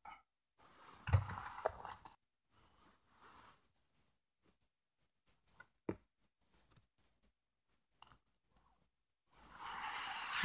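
Hands shifting a rubber-backed car floor mat over the carpet, a short stretch of rustling and scraping, then a few faint taps and clicks from handling a plastic carpet-gripper clip, the sharpest about six seconds in.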